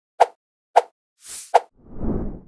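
Motion-graphics sound effects: three short, sharp pops spaced about half a second apart, with a quick airy whoosh just before the third. A fuller swish rises near the end.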